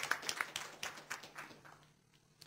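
Audience applause, scattered claps that thin out and die away toward the end.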